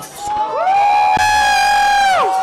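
A long, loud, high-pitched whoop from someone in the crowd: the voice swoops up, holds one note for about a second and a half, then falls away, over nightclub music.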